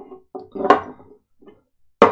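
Stemmed whisky tasting glasses being moved around on a wooden tabletop, with one sharp clack of a glass set down on the wood a little under a second in, among a few quieter knocks.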